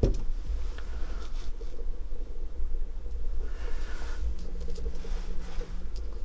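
Faint rustling and scraping as hands move a conifer seedling on a sheet of paper, over a steady low hum.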